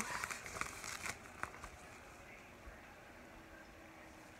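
Thin vinyl of a deflated inflatable watermelon pool ring crinkling and crackling as it is unfolded and handled, busiest in the first second and a half, then dying down to faint rustles.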